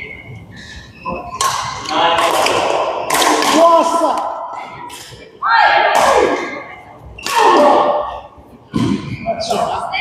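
People's voices talking and calling loudly in a large echoing badminton hall, with a few short racket-on-shuttlecock hits and thuds between them.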